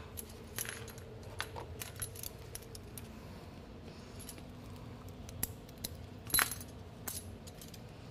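Metal clips and hardware of a resistance band clinking and clicking as the band is double-looped on a door anchor and pulled taut: scattered light clicks, the loudest about six seconds in.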